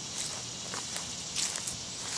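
Footsteps of a person walking on grass: a few soft steps, the loudest about a second and a half in.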